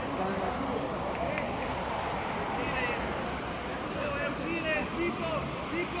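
Many voices of players and spectators calling and shouting over one another, with short, high shouts in the second half.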